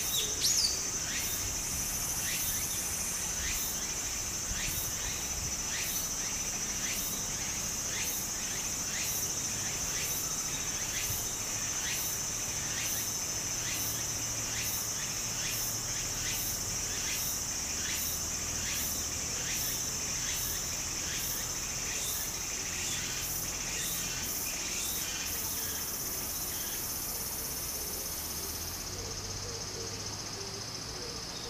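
Cicadas singing: a steady high drone with another cicada's pulsing call, about two pulses a second, which gives way near the end to a steady higher buzz. Underneath, the soft flow of a shallow stream, and a brief short sound about half a second in.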